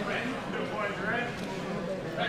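Indistinct talk of several people at once, with overlapping voices.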